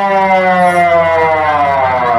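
An actor's voice holding one long drawn-out note over the stage loudspeakers, slowly falling in pitch, with a steady low hum beneath.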